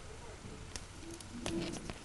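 Faint handling noise of stiff embossed paper and a clear plastic sheet being turned over by hand, with a few light ticks and crinkles.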